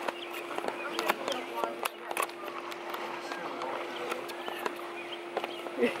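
Poolside background: faint, indistinct distant voices over a steady low hum, with light clicks of the camera being handled. A short laugh comes right at the end.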